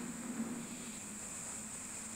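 Steady background room noise: a faint low hum under an even hiss, with no distinct events.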